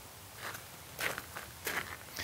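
A few slow footsteps on a gravel drive, faint, about three steps spaced roughly half a second or more apart.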